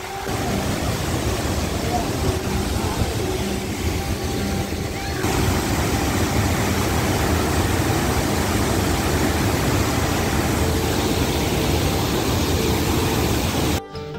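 Large mountain waterfall: heavy water pouring over rock in a steady rush, louder and brighter from about five seconds in.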